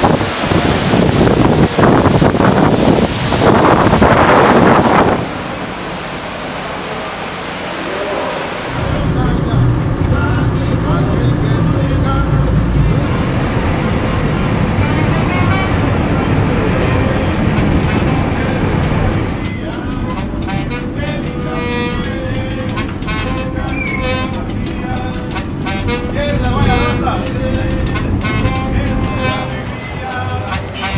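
Heavy tropical rain pouring down, loudest for the first five seconds and easing a little before it ends about nine seconds in. Then comes the low rumble of a car driving, and from about twenty seconds, music with voices.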